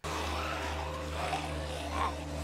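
A film soundtrack playing a steady low drone under a faint hiss. A few faint wavering sounds come in about a second in.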